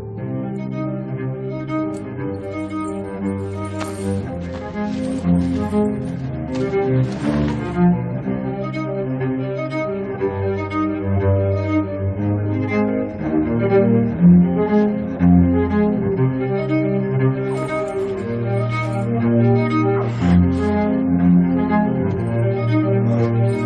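Orchestral score: cello and other bowed strings playing a slow melody of long, held notes over a low bass line.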